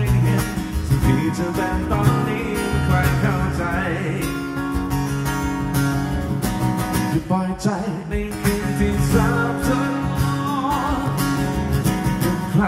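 Martin DCME acoustic-electric guitar strummed in steady chords, with a man's voice singing over it in places.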